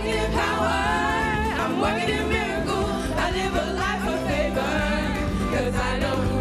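Gospel praise-and-worship music: voices singing a worship song over steady instrumental backing.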